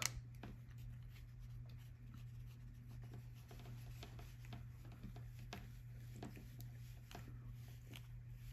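Faint, scattered clicks and rubbing of fingers screwing an M12 field-wireable connector's termination onto its sealing nut.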